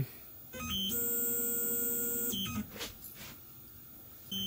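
Tormach PCNC 770 mill's Z axis being jogged down: a steady multi-pitched stepper-drive whine that ramps up in steps about half a second in, holds for about two seconds, then ramps down and stops.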